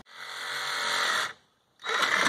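Cordless DeWalt-style reciprocating saw running, its motor coming up to speed over about a second, stopping briefly, then starting again near the end.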